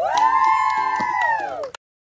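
A long, high held voice, several voices close in pitch, that swoops up at the start, holds and falls away, over music with a steady beat; it cuts off abruptly shortly before the end.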